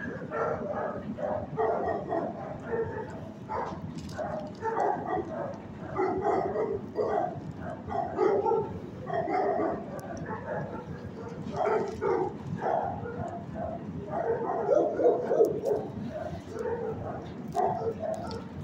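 Several shelter dogs barking and yipping over one another in quick, irregular barks.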